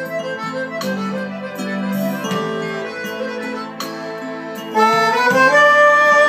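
Piano accordion playing a lively melody of short notes over held bass chords, growing louder about five seconds in, where a man's singing voice comes in with long held notes.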